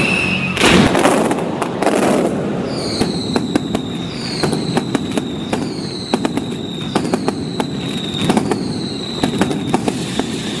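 Mascletà firecrackers going off in a run of sharp cracks, with a big bang about a second in. From about three seconds in, whistling fireworks sound one after another about once a second, each whistle falling slightly in pitch.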